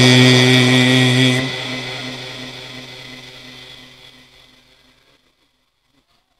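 Male Quran reciter's long held note in mujawwad recitation, which ends about a second and a half in; its reverberation through the sound system then fades away over the next few seconds.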